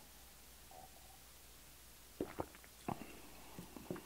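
Quiet sip of beer from a glass, then a few short soft gulps and mouth clicks as it is swallowed and tasted, in the second half.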